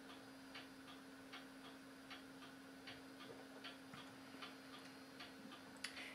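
Faint ticking of a mantel clock: an even tick-tock with louder and softer beats in turn, about two to three ticks a second, over a low steady hum.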